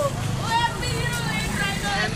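Several young men's voices talking and calling out at once, over a steady low rumble of street traffic.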